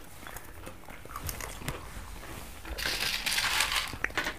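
Dry sweetened puffed wheat cereal rustling and crackling as hands dig into a bowl of it. Soft scattered crackles lead into a louder, dense crackling for about a second near the end.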